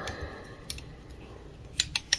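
A few small, sharp clicks of hand handling at a fly-tying vise (one about a second in, two close together near the end) over a low, steady background hum.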